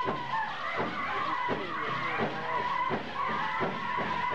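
Powwow drum group singing a grand entry song: high, wavering held voices over repeated drum beats.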